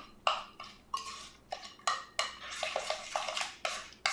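A utensil stirring a runny oat, egg and milk pie filling in a glass mixing bowl. It clinks and taps against the glass in irregular strokes, about three a second.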